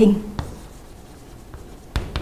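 Writing sounds after a spoken word ends: a sharp tap about half a second in, faint scratching, and another tap near the end.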